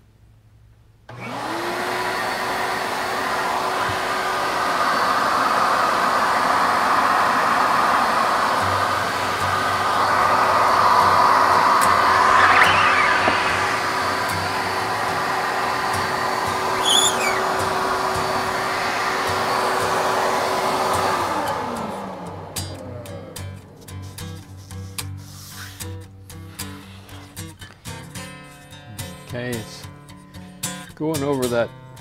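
Suction motor of a screen-printing vacuum table switching on about a second in, its pitch rising to one steady tone, running with a steady rush of air, then switching off about 21 seconds in and winding down in a falling pitch.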